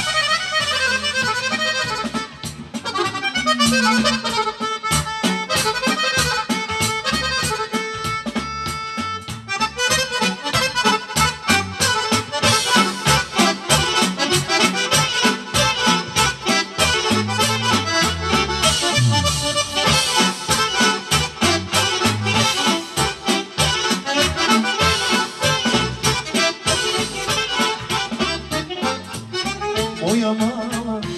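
Live folk band playing an instrumental dance tune: an accordion leads a fast melody over a drum kit keeping a steady beat.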